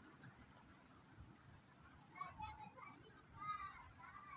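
Faint voices in the distance over a near-quiet outdoor background, coming in about halfway through.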